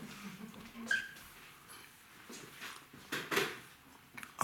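A man drinking sparkling water from a paper cup, heard as a few short, soft sipping sounds. There is a brief high squeak about a second in.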